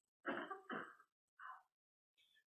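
A person softly clearing their throat: three short, quiet sounds in quick succession.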